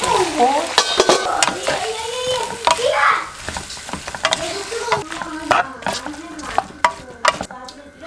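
Vegetable and gopchang stir-fry sizzling in a wok while a spatula tosses it, with many sharp clanks and scrapes of the spatula against the pan. The sizzle thins out in the second half while the clanks go on.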